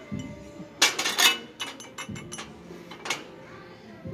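Clear glassware clinking as it is handled: a quick cluster of bright glass knocks with a short ring about a second in, and another single clink near the end.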